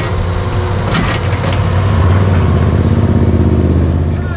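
A motor vehicle engine running steadily close by, its low hum growing louder about halfway through, with two sharp clicks near the start.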